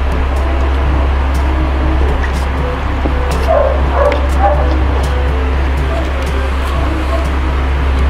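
Steady low background hum and hiss, with a dog barking a few times in the middle.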